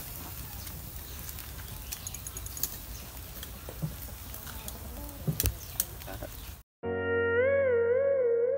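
Metal tongs clicking against a wire grill as chunks of meat are turned over charcoal, over a steady outdoor background with a few faint high chirps. Near the end the sound cuts out briefly and background music of electronic keyboard tones with a warbling melody begins.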